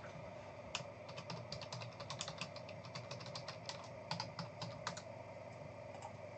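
Typing on a computer keyboard: a quick, irregular run of key clicks that starts about a second in and stops near the end.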